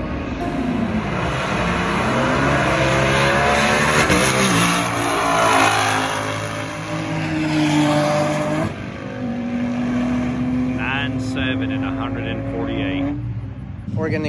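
Twin-turbocharged Mustang GT making a drag-strip pass: the engine pulls hard at full throttle, its pitch climbing and dropping back with each upshift. After about nine seconds it settles to a steadier, lower note as the run ends.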